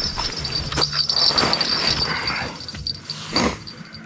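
Distant coyotes howling and yipping together in a high, wavering chorus that fades near the end, under louder rustling and knocking close by.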